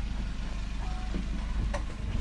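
A vehicle engine idling low and steady, with scattered footsteps and a few short clicks over it.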